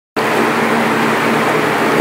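Steady machine noise, an even hiss with a low hum underneath, cutting in abruptly just after the start.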